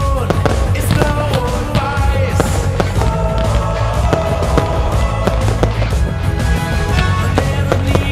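Pop music soundtrack playing, with aerial firework shells bursting and crackling over it in a rapid series of sharp bangs.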